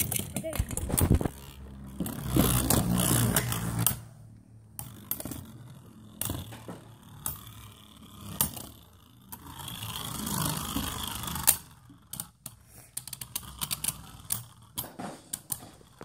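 Beyblade spinning tops whirring and clashing in a plastic stadium, with a run of uneven sharp clicks and clacks as they strike each other and the stadium wall.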